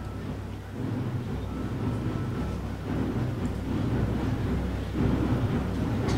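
Boys' Brigade band drums heard as a muffled low rumble, swelling louder in steps about every two seconds.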